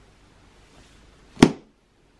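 A paperback book snapped shut in the hands, one sharp clap about a second and a half in, with a faint rustle just before it.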